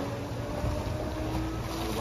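Ocean water washing along the rocks, with wind buffeting the microphone and a faint steady hum in the middle.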